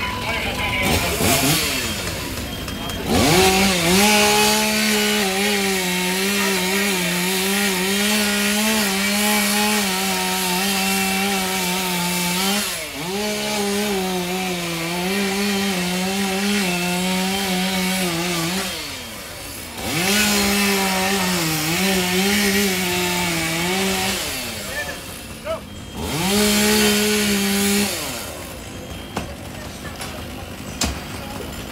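Firefighters' two-stroke chainsaw cutting a ventilation opening in a burning garage roof, running at high speed in four long runs, each starting with a quick rev-up and dipping in pitch under load.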